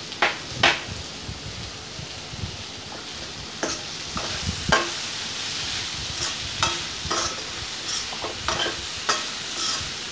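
Mixed vegetables with freshly added green capsicum sizzling in oil in a kadai while a spatula stirs and scrapes them against the pan. The sizzle grows louder about four seconds in, and the spatula strokes come more often in the second half.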